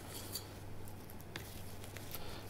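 Faint sound of a long flexible knife making a small cut into the skin at the tail end of a salmon fillet on a board, with two light clicks.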